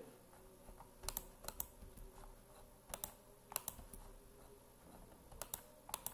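Faint computer mouse and keyboard clicks, scattered singly and in quick pairs every second or so.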